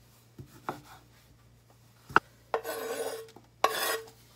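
A knife tapping lightly on a wooden cutting board as green olives are sliced, with one sharper knock about halfway. Then two rasping scrapes follow as the sliced olives are scraped off the wooden board into a bowl.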